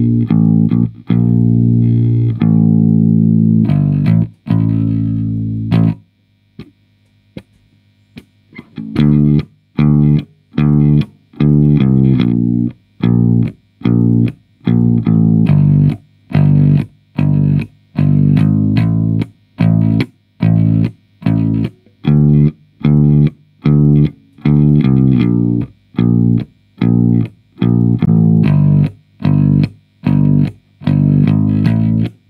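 Electric bass guitar played solo: a few held notes, then a pause of about three seconds with only faint string noises, then a long run of short, detached notes with gaps between them, about two a second.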